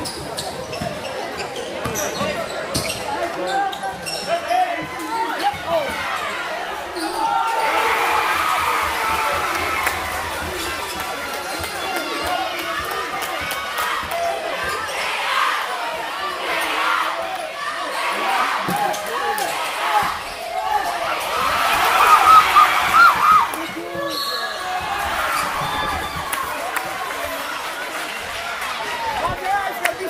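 Basketball being dribbled on a hardwood gym floor during play, a run of sharp bounces throughout, with players and spectators calling out; the voices are loudest a little past the middle.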